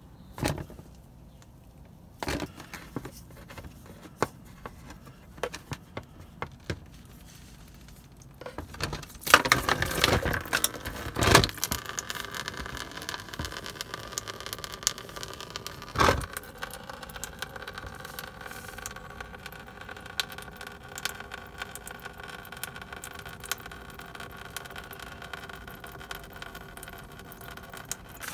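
Phillips screwdriver clicking and scraping in the radiator drain plug as it is worked loose, with a louder burst of scraping and knocks about ten seconds in. Then coolant pours steadily from the radiator drain into a drain pan, with one sharp knock a few seconds after the flow starts.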